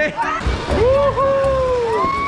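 A voice holding a long, gently wavering note from about half a second in, over a steady low rumble.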